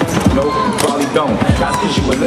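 Hip hop track with a rapper's voice, over a basketball being dribbled on pavement in repeated low bounces.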